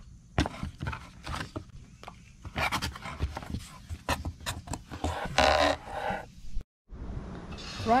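Cardboard box flaps, a paper insert and foam packing being handled: a run of rustles, scrapes and light taps, with a brief dropout near the end.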